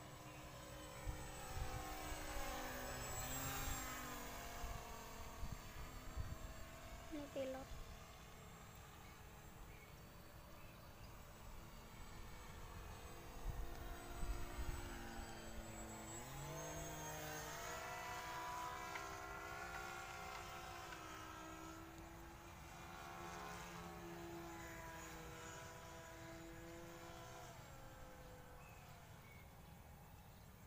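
Motor and propeller of a radio-controlled model glider droning in flight. The pitch slides down around three seconds in, then rises sharply about sixteen seconds in and holds steady.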